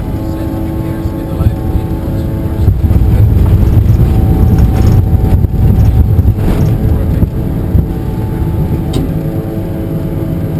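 The Bombardier Challenger 605's GE CF34 turbofans run, heard in the cockpit as a steady whine of several tones over a low rumble. The rumble grows heavier from about three seconds in until about seven seconds in, then eases back.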